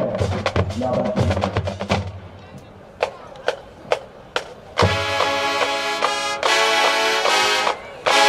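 Marching band playing: drums with low brass at first, thinning to a few sharp single drum hits, then about five seconds in the full horn line comes in with loud held brass chords that cut off just before the end.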